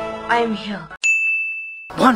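A voice over film music, then about a second in a single high ding sound effect that rings on one steady pitch, fading, and cuts off abruptly.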